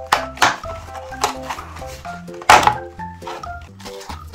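Background music, a quick electronic melody over a bass line, with several sharp clicks and crackles of a clear plastic egg carton being handled and opened. The loudest comes about two and a half seconds in.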